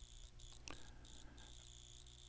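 Near silence: faint steady recording hiss with a thin high tone and a low hum.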